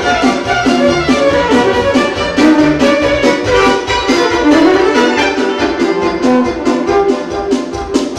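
Live dance music led by a violin, over a steady, driving beat.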